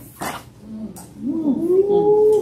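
A person's wordless, drawn-out vocal exclamation that rises in pitch and is held for about a second, starting a little past the middle.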